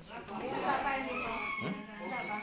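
A rooster crowing: one long call of nearly two seconds that ends on a held high note.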